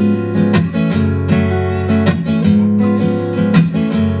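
Acoustic guitar strumming a rhythmic Cuban guajira accompaniment, sharp strokes about every half second over ringing chords and a steady low bass line, in an instrumental break between sung lines.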